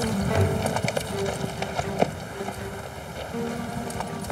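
A group of horses moving, with scattered hoof knocks over a dense low jumble of movement, and a held musical score underneath.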